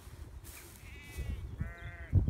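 Sheep bleating twice in short calls, a fainter one about a second in and a louder one near the end.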